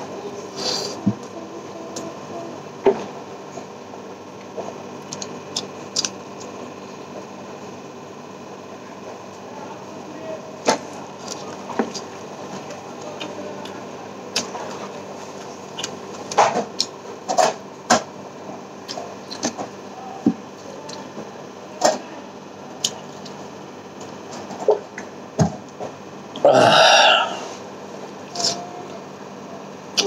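A person eating rice and curry by hand, with wet chewing, lip smacks and short clicks of the mouth and fingers scattered throughout over a steady faint hum. Near the end comes one loud burp lasting under a second.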